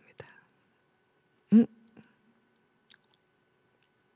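A short voiced sound from a person, like a brief hum or throat noise, about a second and a half in, with a faint held tone after it. A few small clicks follow in an otherwise quiet room.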